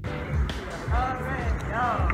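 Repeated low thumps and rumble from wind buffeting a handheld phone microphone, with voices and some music mixed in underneath.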